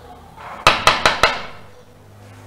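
Four loud knocks on a wooden door in quick succession, about five a second, each with a short ringing tail.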